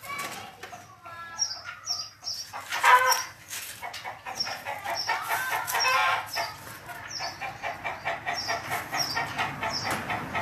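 Birds calling: short high chirps repeating about twice a second, with lower calls and a louder burst about three seconds in.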